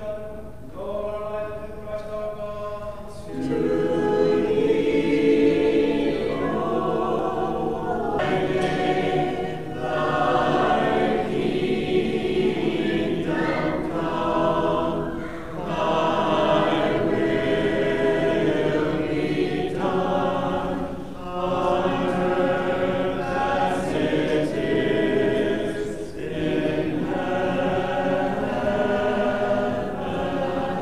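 Church choir of several voices singing Orthodox liturgical chant a cappella in phrases with short breaths between them, softer at first and fuller from about three seconds in.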